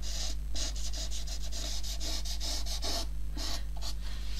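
Felt-tip nib of a Promarker marker rubbing along the edge of an MDF tag in quick, repeated scratchy strokes, several a second, over a low steady hum.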